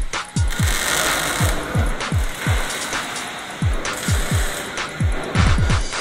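Background electronic music with a steady kick-drum beat about twice a second, and a hissing noise layer that is strongest over the first few seconds.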